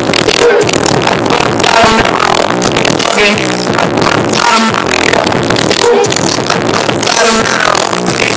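Hip-hop track played loudly through a wall of Beyma loudspeakers, heard up close to the cones.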